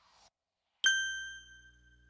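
A single bright electronic chime, a logo-sting ding, struck about a second in and ringing out as it fades.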